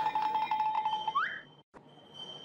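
Cartoon-style comedy sound effect: a steady beeping tone with fast even ticks, then a quick rising whistle, and after a brief gap a thin high steady tone.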